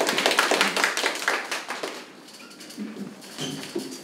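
A small audience applauding, dense clapping for about two seconds that then dies away into quieter room noise with faint voices.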